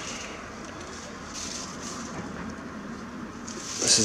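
Quiet outdoor street background noise, a faint steady hiss with no distinct events.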